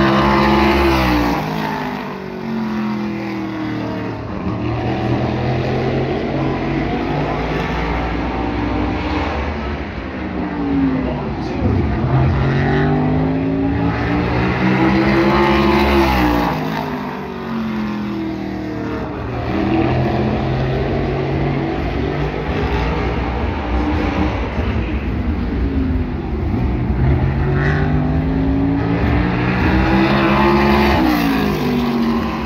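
A SMART modified race car running qualifying laps alone on a short oval. Its engine swells and sweeps up then down in pitch as it passes at the start, again about halfway through and near the end, and drops back to a more distant drone around the far side of the track in between.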